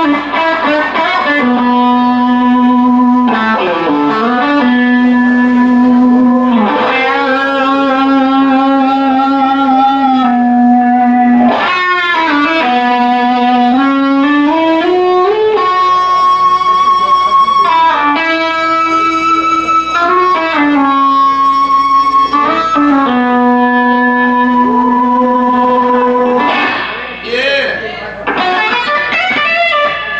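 A rock band playing live, with electric guitar: a slow melody of long held notes that slide up or down into the next pitch, with a brief dip in loudness near the end.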